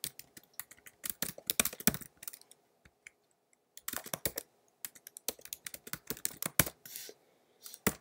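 Typing on a computer keyboard: runs of quick key clicks, with a pause of about a second and a half in the middle.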